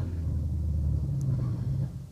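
Steady low rumble from a home-cinema sound system, dying away near the end.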